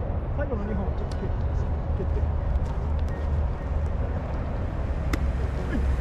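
Steady low outdoor rumble with faint, distant voices now and then, and two sharp taps, the second louder, about a second in and near the end.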